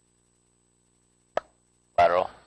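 A single short, sharp click about one and a half seconds in, over a faint steady hum. A voice begins at the very end.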